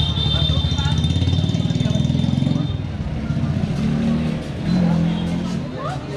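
Busy street ambience: a motor vehicle engine runs close by for about the first half, then people's voices.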